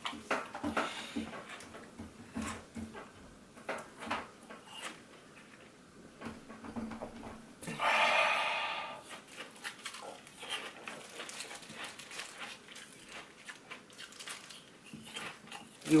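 Frozen sports-drink ice balls being chewed and crunched in the mouth, with irregular crisp crunches. About eight seconds in comes a loud, breathy gasp, a reaction to the cold as brain freeze sets in.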